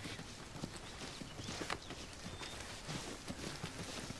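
Footsteps of several people hurrying over a forest floor through undergrowth, an irregular run of steps.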